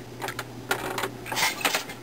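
Wooden jack loom clattering: several irregular wooden knocks as the treadle is changed to shift the harnesses and the beater is swung.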